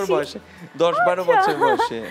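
Conversational speech: a woman talking, with a short pause about half a second in.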